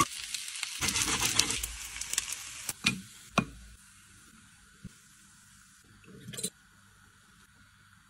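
Plant-based steak sizzling as it sears in hot, bubbling fat in a frying pan, with scattered sharp crackles. The sizzle stops about three and a half seconds in, and it is nearly quiet after that except for one brief soft sound a little after six seconds.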